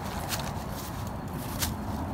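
Pieces of bark and wood being set down on cardboard over dry leaves: a few short knocks and rustles over a steady low rumble.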